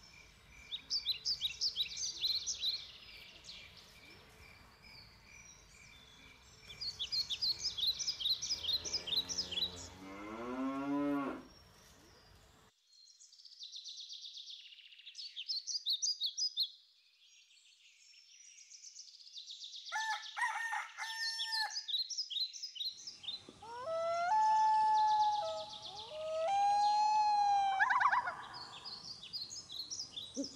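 Countryside soundscape of small songbirds singing in quick high trills, with a cow mooing about ten seconds in and a rooster crowing in the last third.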